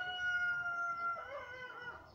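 A rooster crowing: one long drawn-out call that drops in pitch about halfway through and fades out.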